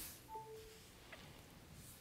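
Near silence, with a faint short electronic chime early on: a brief high note followed by a slightly longer lower note. It is the phone's alert that it has started charging on the wireless pad.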